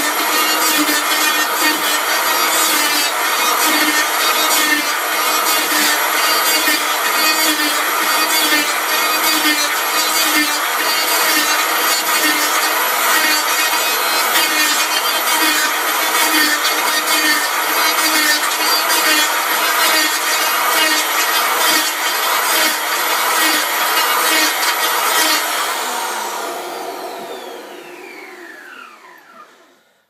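Electric hand planer running and cutting along a maple cue shaft blank: a motor whine under a rough cutting noise, with a regular pulse about twice a second. About 25 seconds in it is switched off and the whine falls in pitch as the cutter winds down.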